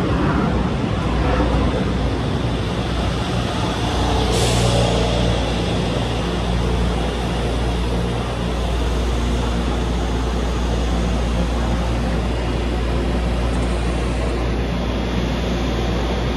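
Taiwan Railway EMU500 electric commuter train running along a station platform and slowing to a stop, a steady mechanical rumble and hum. A brief burst of hiss comes about four seconds in.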